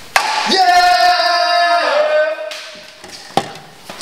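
A long, steady-pitched shout from a man's voice, held for about two seconds before dropping slightly in pitch. A sharp click comes just before it, and another near the end.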